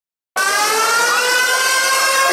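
Opening of an electronic pop song played live over a concert sound system: sustained, siren-like synthesizer tones that cut in suddenly about a third of a second in, after silence.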